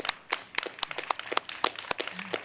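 A small group of people clapping by hand: separate, sharp claps at an uneven pace, several a second.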